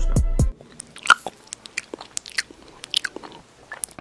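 Music stops suddenly about half a second in, then barbecue potato chips crunch in irregular, crisp snaps as they are bitten and chewed.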